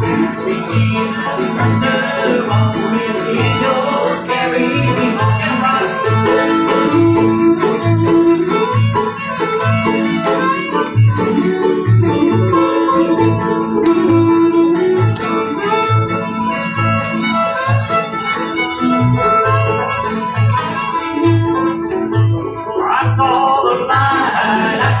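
Small acoustic bluegrass band playing an instrumental passage: strummed acoustic guitars and a banjo, with a fiddle. A steady bass note lands on each beat, a little under once a second.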